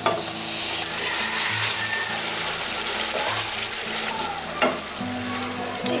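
Yogurt-marinated chicken going into hot spiced oil in a metal pot, sizzling loudly as a spatula scrapes and stirs it in. The sizzle eases after about four seconds, and there is a single metal click near the end.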